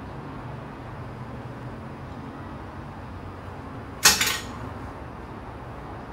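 A single sharp clatter about four seconds in, a hard object striking the floor and ringing briefly, over a steady low hum.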